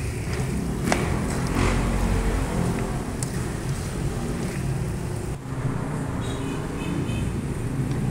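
Metal spatula scraping and tossing chopped pork sisig in a steel wok, with a few sharp clicks of metal on metal, over a steady low rumble.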